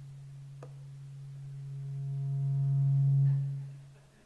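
A low, steady hum of one pitch that swells about two seconds in, picking up faint higher overtones, then fades away near the end. A single faint click comes about half a second in.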